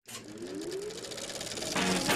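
Closing logo sting: a noisy rising swell with a climbing tone grows steadily louder, then music with chords comes in near the end.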